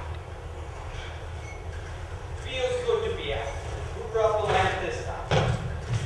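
A brief lull in stage dialogue with a low room hum, then actors' voices resuming from about halfway through, carrying in a hall, with a short thump shortly before the end.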